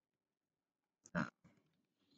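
Near silence, then a single short vocal noise from a man a little over a second in, without any spoken word.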